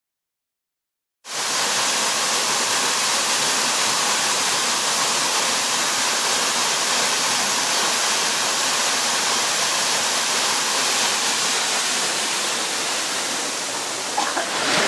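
Waterfall pouring down a mossy rock face: a steady rush of falling water that cuts in suddenly about a second in, after silence.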